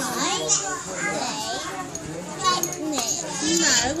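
Young children chattering and squealing in high voices, with a laugh at the end.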